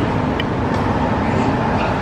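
Steady background noise: an even rush with a faint steady hum and no distinct events.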